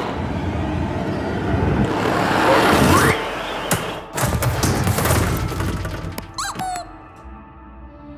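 Cartoon sound effects of a spaceship breaking apart: a loud rushing din with crashes, thuds and shattering hits, over music. Near the end it gives way to orchestral music.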